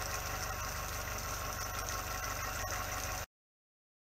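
Steady low hum of an idling engine with an even pulse, cutting off abruptly a little over three seconds in.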